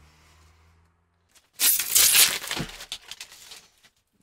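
Protective plastic film being peeled off a laser-cut acrylic panel: a loud tearing rip about a second and a half in, lasting about a second, then a few scattered crackles of the loose film.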